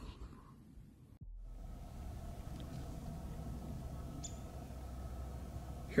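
Faint, steady background ambience of snowy woods, mostly a low hum with no distinct event, starting after a brief gap about a second in. A single short, faint high-pitched chirp comes about four seconds in.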